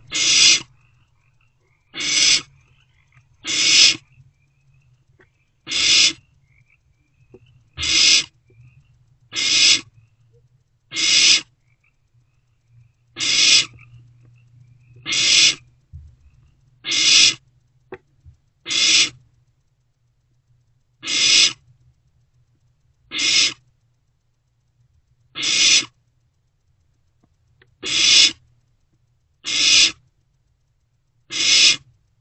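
Barn owlets giving their raspy, hissing begging calls, one hiss about every one and a half to two seconds, repeated throughout. A faint steady low hum runs underneath.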